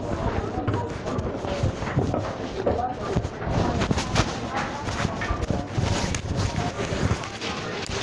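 Muffled handling noise of a phone microphone covered in a pocket or hand: repeated scraping, rubbing and knocks against fabric, with indistinct voices behind it.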